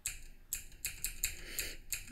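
Computer keyboard being typed on: a quick, uneven run of about a dozen key clicks.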